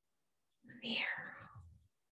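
A person's short, breathy whispered sound, lasting a little over a second and starting about half a second in.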